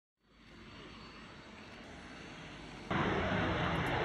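Steady jet noise from an Aermacchi M-346's twin Honeywell F124 turbofan engines, fading in from silence and then jumping abruptly to a much louder level about three seconds in.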